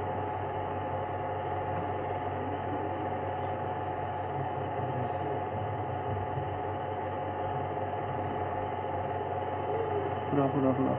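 A steady droning hum that holds the same pitch and level throughout, with no distinct events.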